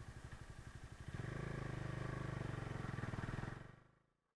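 Bajaj Dominar 250's single-cylinder engine idling with an even pulse, then about a second in it gets louder with a steady note as the bike pulls away. The sound fades out near the end.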